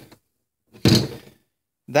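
A single short thunk about a second in, a metal transmission input drum set down on the table.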